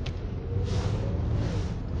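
Lincoln MKZ sedan driving, heard from inside the cabin: a steady low road and engine rumble, with tyre and wind hiss that swells through the middle.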